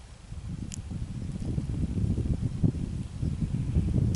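Wind buffeting the microphone, a low rumble that builds about a second in, with one brief high tick near the start.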